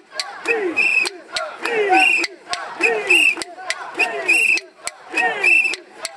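Mikoshi bearers shouting a rhythmic chant in unison as they carry a portable shrine, a falling-pitch call about once a second. Sharp clicks come between the calls.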